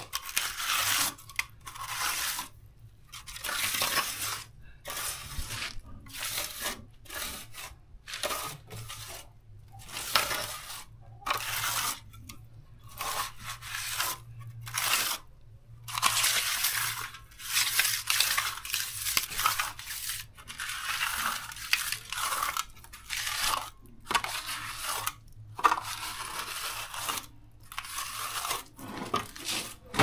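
Repeated crunching, scraping strokes of dry material being worked, each lasting about a second, with short gaps between them.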